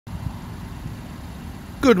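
Low, uneven outdoor rumble, then a man's voice begins near the end.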